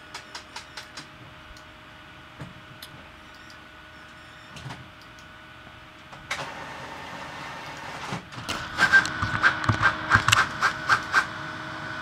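A desktop printer printing a page: a few quick clicks at the start, then about six seconds in its motor starts up with a steady whir, and from about eight seconds it runs a quick series of regular mechanical strokes over a steady whine as the page feeds through.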